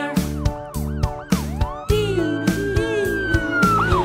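A police-car siren sound, its pitch wavering up and down, over a bouncy children's song backing track with a steady beat.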